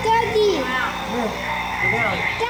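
Indistinct voices of people talking, with a steady low hum underneath.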